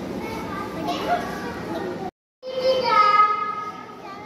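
Children's voices in a hall: indistinct chatter, then the sound drops out completely for a moment about halfway through. After the gap, a young girl's voice comes through a microphone, drawing out a sound for about a second before fading.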